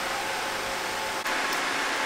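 Steady, even rushing noise with no distinct pitch, like a fan running, with a slight change in level about a second in.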